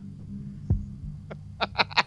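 A low steady hum, then a man's short rapid laugh starting about one and a half seconds in.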